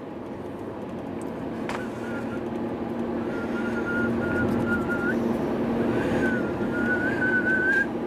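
A person whistling one long, wavering high note, broken once about midway, over the steady drone of a car cabin on the move. A single click comes just before the whistling starts.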